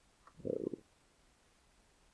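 A short low gurgle, about half a second long, made of a few quick pulses, near the start; otherwise quiet room tone.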